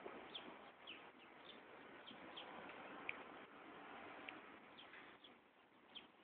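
Near silence, broken by a few faint, brief bird chirps scattered through it.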